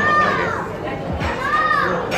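A young child's high-pitched voice calls out twice, each call rising and then falling in pitch, the first right at the start and the second near the end, over the steady background noise of a crowded restaurant hall.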